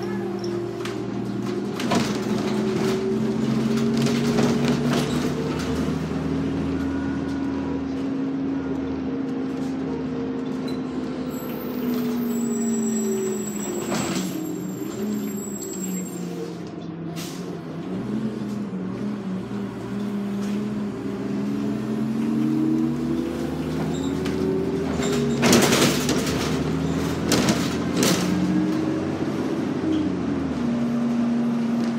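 New Flyer D40LF diesel city bus from inside near the front: the engine and drivetrain drone climbs in pitch as the bus picks up speed, sinks as it slows midway, then climbs again. Short knocks and rattles of the body come through now and then, loudest as a brief clatter about three quarters of the way in.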